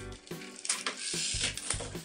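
The pull-back spring motor of a small metal toy car whirring as the car is drawn back and rolled along a tabletop, with a few sharp clicks. Music plays underneath.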